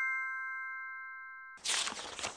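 A bright, bell-like chime sound effect for a channel logo rings on and fades away. About one and a half seconds in, a short whoosh transition effect sweeps in.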